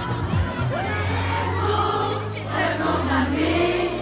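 A large crowd of children singing a song together over amplified backing music from loudspeakers, with held bass notes changing every second or so under the voices.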